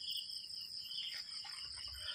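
Crickets chirping in a steady, continuous high trill, fairly faint.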